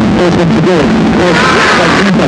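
Television cricket commentator talking over a steady low hum, with a wash of stadium crowd noise rising near the end as a wicket falls, caught behind.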